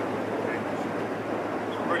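Steady outdoor background noise with a low, even hum underneath, and no distinct event standing out.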